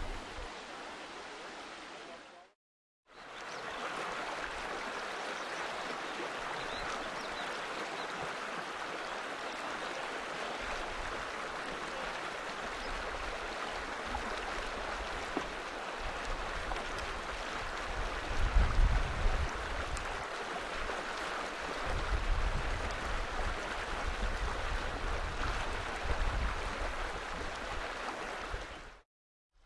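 River water flowing with a steady, even rush, starting after a brief drop-out about three seconds in, with bouts of low rumble in the second half.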